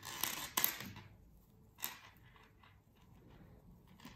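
Circular knitting needles and yarn being handled as a stitch is worked: a scratchy rustle with a sharp click in the first second, a single short tick a little before two seconds in, then only faint handling noise.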